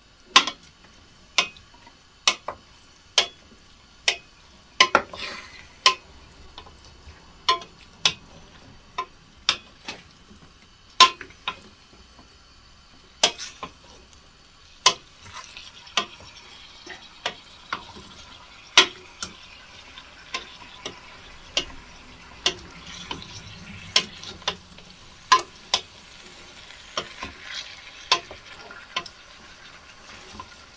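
Metal spoon scraping and clinking against a stainless steel saucepan as chunks of potato and carrot are turned over and basted in hot oil, with sharp irregular clinks about once a second. A faint sizzle of frying rises from about halfway through.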